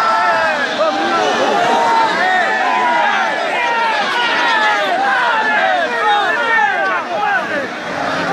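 Large crowd of people shouting and yelling over one another, a continuous loud din of many overlapping voices.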